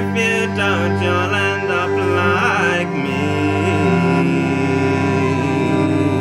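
Live folk ensemble of cello and fiddle playing over a steady low drone. A wavering, sliding melody line stops about three seconds in, and lower bowed lines carry on beneath.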